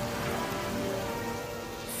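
Steady rain of a storm, with background music holding sustained notes over it.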